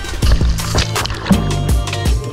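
Background music with a steady drum beat and bass line.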